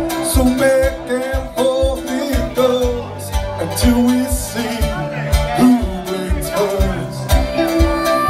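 Live roots band playing: drum kit with a steady kick beat about twice a second, bass and electric guitar, and a lead line of bending notes played on a blues harmonica.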